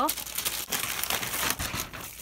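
Plastic packaging crinkling and rustling as it is handled, a dense crackle with a few sharper snaps.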